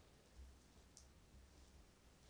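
Near silence, with two faint clicks, about half a second and a second in, from the watches being handled in gloved hands.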